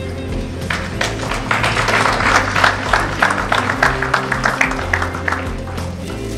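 Audience applauding over recorded background music. The clapping starts about a second in, swells, and dies away near the end.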